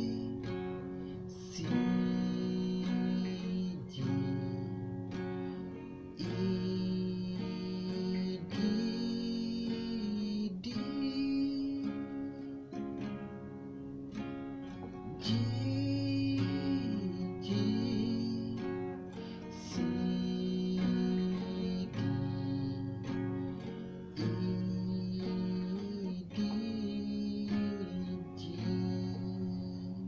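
Acoustic guitar strummed in a repeating rhythm pattern on a G chord, each strum ringing on before the next.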